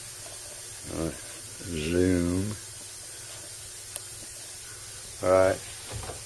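A man's voice making three short murmured sounds, about a second in, around two seconds in and just after five seconds, over a steady low hiss.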